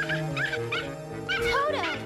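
Small cartoon dog giving several short yips, then a longer falling whine near the end, over background music.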